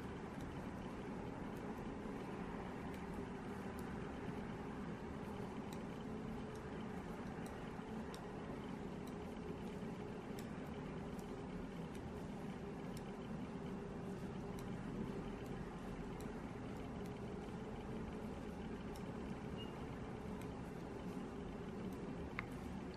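Steady low background hum with faint, scattered light clicks of metal knitting needles as stitches are knit.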